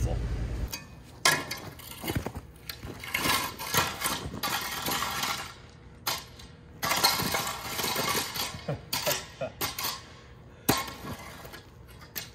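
A steel rake scraping and chipping at frozen soil in a trench, in two long stretches of rasping with a sharp knock near the end; the ground is frozen solid and will hardly dig. Wind buffets the microphone at the very start, then cuts off.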